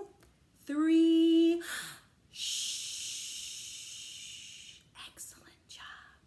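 A woman's held, drawn-out word, then a long "shhh" shush lasting about two and a half seconds and slowly fading away: a signal to young listeners to be quiet.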